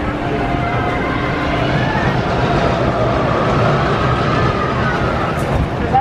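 Steady low rumble with faint voices and wavering cries in the background.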